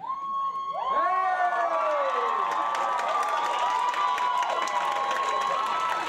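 Audience screaming and cheering, breaking out suddenly and then holding, with many long, high-pitched shrieks and whoops overlapping.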